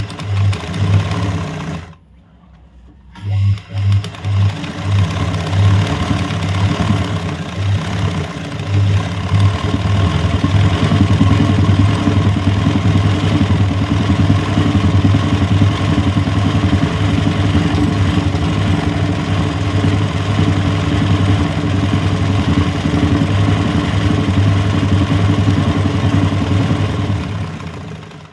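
Sewing machine doing free-motion embroidery, stitching a satin-filled leaf through fabric held in a hoop. It runs in short spurts with a brief stop about two seconds in, then runs steadily and stops just before the end.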